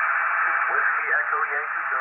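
ICOM IC-575A transceiver receiving on the 10-metre band through its speaker: a steady hiss of band noise, with the faint voice of a distant station coming through from about half a second in.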